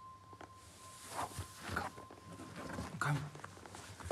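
An injured young man gasping and whispering weakly in short breathy bursts, over a steady high ringing tone that fades out about two and a half seconds in.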